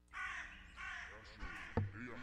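Three bird calls in quick succession, then a single sharp knock near the end, the loudest sound.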